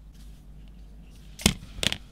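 Small tools and wire handled on a workbench: a faint steady hum, then two sharp clicks in the last half-second.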